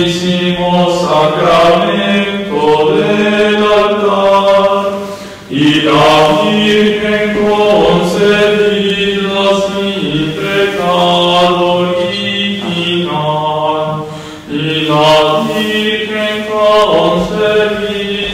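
Voices singing a slow sacred chant in long held phrases, with short breaths between phrases about five and a half seconds in and again near fourteen and a half seconds.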